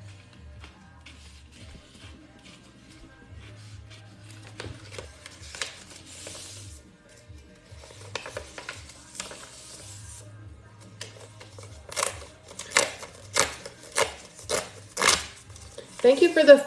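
Paper raffle tickets being folded and crumpled by hand, ending in a quick run of about eight sharp paper crackles in the last four seconds. Quiet background music with a low bass line plays throughout.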